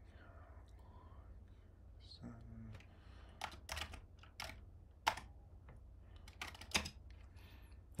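Keystrokes on a computer keyboard: several separate sharp key clicks in the second half as a short command is typed, over a steady low hum.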